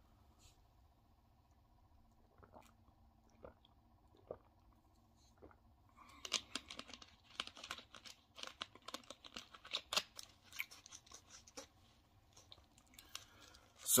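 A person drinking fizzy soda from a plastic bottle: a few faint swallows about a second apart, then several seconds of faint crackling and clicking.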